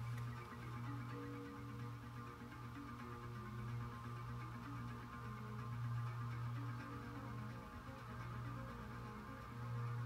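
Faint music from a radio over a steady low drone.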